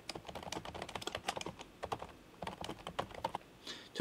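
Typing on a computer keyboard: a quick, irregular run of key clicks that thins out in the second half.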